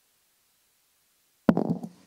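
Silence, then a sudden click as the sound cuts in near the end, followed by a brief low voice sound of about half a second.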